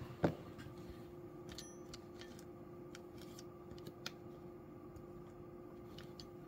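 Faint steady hum with a few small, sharp clicks, the loudest just after the start.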